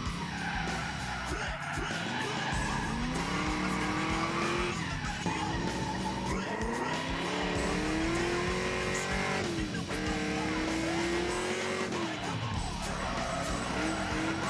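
The V8 engine of a V8-swapped Mazda RX-7 FD heard from inside the cabin, revving up in rising pulls and holding high revs several times, dropping off near the end, with tyres skidding as the car drifts.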